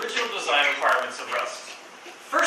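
A man's voice speaking: continuous lecture speech, with short pauses between phrases.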